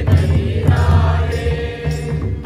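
A large group of men and women singing a song together to the beat of hand-played drums, with several drum strokes standing out.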